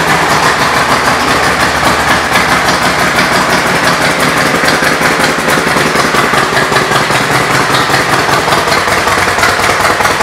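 2005 Harley-Davidson Road King Classic's Twin Cam 88 V-twin idling steadily through its aftermarket Python exhaust, a fast, even run of firing pulses.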